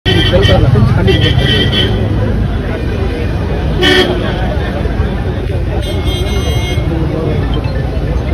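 Crowd chatter around a car, with a car horn tooting a few times; the loudest is a short toot about four seconds in.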